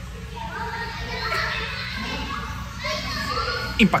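Children's voices and people talking among the visitors, with a sudden loud voice near the end.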